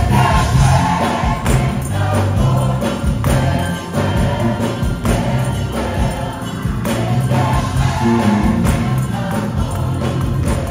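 Gospel choir singing full-voiced with band accompaniment: a strong bass line and a steady beat underneath.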